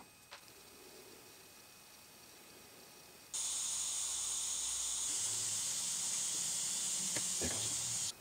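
A butane soldering iron hisses steadily as it heats the antenna connector fitting to free a stuck plug. The hiss starts suddenly about three seconds in, after a near-silent start.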